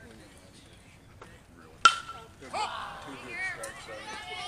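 A metal baseball bat hitting a pitched ball about two seconds in: one sharp ping with a short ringing tone after it. Spectators shout and cheer right after the hit.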